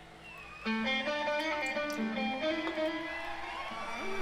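Live rock band recording: an electric guitar comes in abruptly a little over half a second in and plays a run of melodic notes.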